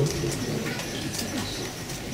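Open-air ambience with birds calling in the background.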